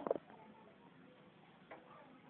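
Scraping at the stuck crust of natilla inside a large metal pot: a short knock against the pot at the start and a faint click near the end, with quiet in between.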